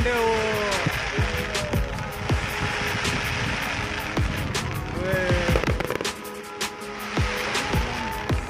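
Fireworks going off: a rapid, irregular string of bangs and cracks from bursting shells, several a second. Voices cry out near the start and again about five seconds in, over faint background music.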